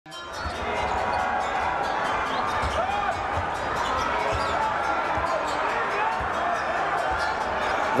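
Basketball being dribbled on a hardwood court, low bounces at irregular intervals over the steady hubbub of an arena crowd with faint voices.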